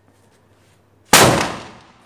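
A 3.5-inch Sony Vinayaga 'Blue Chip' aerial firework shell going off with a single loud, sharp bang about a second in, which fades away over about half a second.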